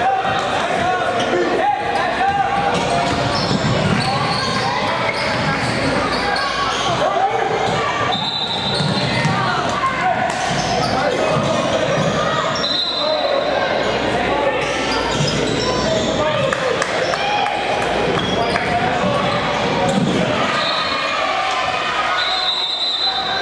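Basketball bouncing on a hardwood gym floor during play, among the echoing voices of players and spectators in the gymnasium.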